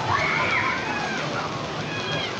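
Steady rushing outdoor noise with faint distant voices rising and falling in it.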